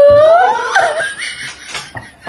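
A woman's long, high-pitched squeal that rises at its end, breaking into bursts of laughter.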